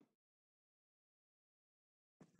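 Near silence, with one brief faint sound right at the start.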